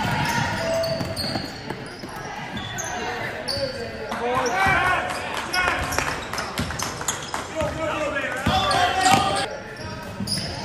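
A basketball being dribbled and bouncing on a gymnasium's hardwood floor during play, with players' voices calling out across the court.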